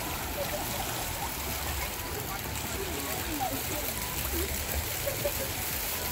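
Water running down a shallow multi-lane water slide and into a splash pool: a steady rush and trickle. Distant voices and children's calls of a crowd sit faintly under it.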